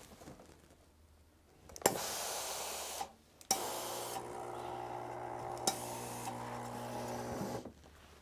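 Steam generator iron pressing a patchwork seam open: a click and a short hiss of steam about two seconds in, then after a brief pause a steadier hiss of steam with a low hum for about four seconds.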